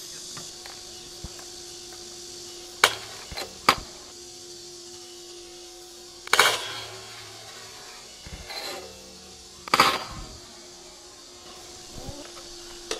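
Stunt scooter boardslide on a round metal handrail: a few sharp clacks of scooter wheels and deck on concrete, then about six seconds in the deck hits the rail and slides along it with a metallic ring, and about ten seconds in another loud clatter as the scooter lands back on concrete. A steady insect drone runs underneath.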